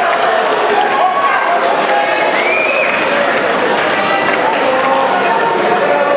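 Boxing crowd shouting and calling out, many voices overlapping at a steady loud level, as the referee counts a boxer who has been knocked down.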